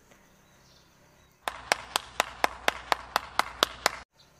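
A quick, evenly spaced run of about eleven sharp percussive hits, roughly four a second, starting about a second and a half in and cut off abruptly at the end.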